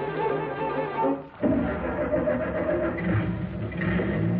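Orchestral music bridge led by bowed strings. About a second and a half in, it changes from separate phrased notes to a fuller, steadier passage.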